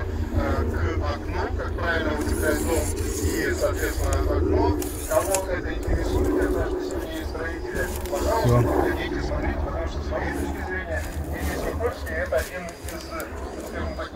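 Indistinct voices of people talking, with no words clear enough to make out, over a steady low rumble.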